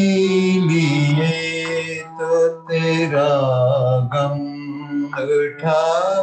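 A man singing a ghazal in long held notes, with a wavering, ornamented stretch near the middle and brief breaks for breath. It comes through a video-call connection.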